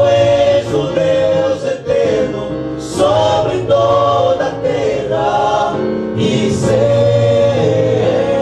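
Male vocal group singing a Portuguese-language gospel hymn in close harmony into handheld microphones, with long held chords over a low bass line.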